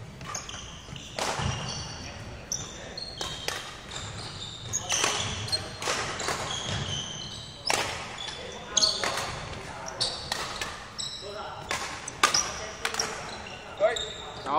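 Badminton rally on a wooden sports-hall court: repeated sharp racket strikes on the shuttlecock mixed with shoes squeaking and thudding on the floor, echoing in the hall.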